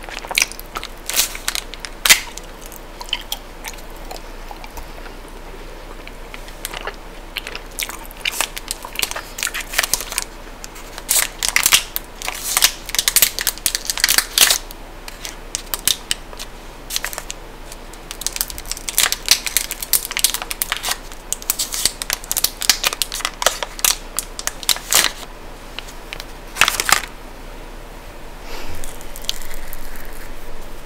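Close-up eating and wrapper sounds: chewing a bite of chocolate bar, and the foil and plastic wrapper crinkling as it is peeled back, in clusters of sharp crackles. A softer rustle comes near the end.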